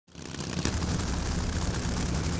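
Drag-racing engine running steadily with a low rumble, fading in from silence at the start.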